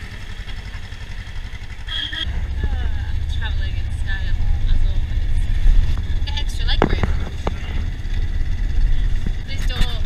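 Low engine and road rumble of a small van serving as a private bus, heard from inside with the side door open; the rumble grows louder about two seconds in as the van gets moving and then runs steadily.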